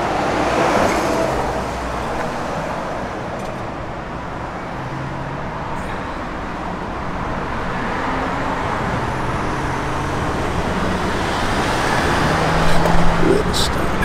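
Road traffic going by: a steady wash of tyre and engine noise that swells about a second in and again near the end.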